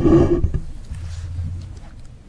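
Microphone handling noise: a loud rustle and rumble on the microphone, strongest in the first half-second and then fading over about a second, as clothing near a clip-on mic is moved.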